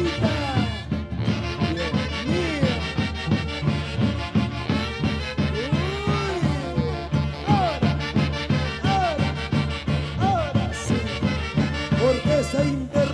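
Peruvian orquesta típica playing a Santiago: clarinets and saxophones carry the melody over harp and a steady drum beat.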